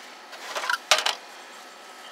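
Scrap computer parts being handled: a short scrape, then a single sharp knock about a second in as a loose motherboard is pulled from among the computer cases.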